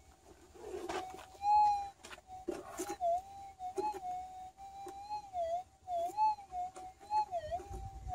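Minelab GPZ 7000 metal detector's audio: a steady threshold hum that swells and wavers up and down in pitch again and again as the coil is swept over a dug spot. This is a faint target response that has sharpened up, which the operator is pretty sure is not a hot rock. A few short knocks come in the first few seconds.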